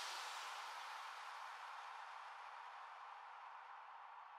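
Faint hiss slowly fading away: the reverb or noise tail left after an R&B drill beat stops.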